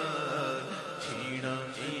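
Men's voices chanting a naat, devotional Urdu/Punjabi singing, with notes held long and no instruments heard.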